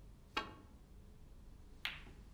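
Snooker cue tip striking the cue ball with a sharp click about a third of a second in. A second sharp click follows about a second and a half later as the cue ball hits a red at the pack.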